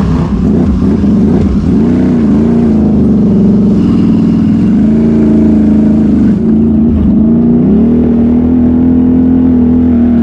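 Can-Am Renegade XMR 1000R ATV's V-twin engine, heard from the rider's seat, revving up and down with the throttle several times and then holding a steady pitch over the last couple of seconds.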